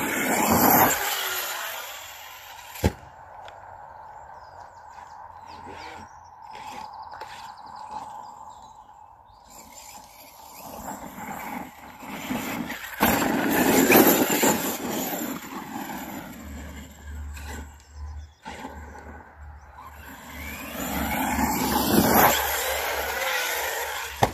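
Large-scale off-road RC cars running on a dirt track: motors whining and revving, loudest in three passing rushes, with a sharp knock about three seconds in.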